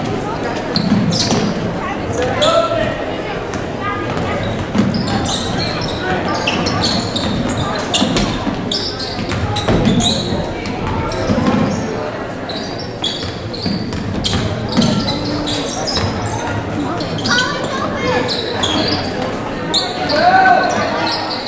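A basketball dribbled on a hardwood gym floor during a game, with spectators' voices and chatter in a large, echoing gym.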